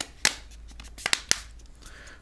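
Plastic back cover of a Homtom HT16 phone being pressed onto the handset, its clips snapping into place: one sharp click, then a quick run of three or four clicks about a second in.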